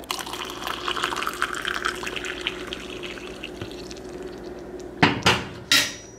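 Water running in a kitchen for about five seconds, followed near the end by two short, loud handling noises.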